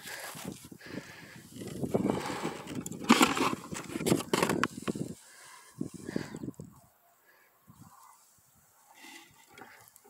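Rustling and camera-handling noise, uneven and strongest in the first five seconds, then dropping to near quiet with only faint scraps of sound.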